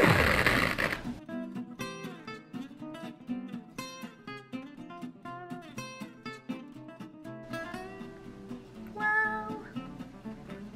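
Background music of plucked and strummed acoustic guitar. Right at the start, a loud ripping noise lasting about a second as a strip of sticky red bandage wrap is pulled and torn.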